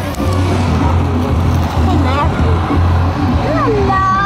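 Loud music with a heavy, steady bass line, with people's voices and short sung or called phrases over it.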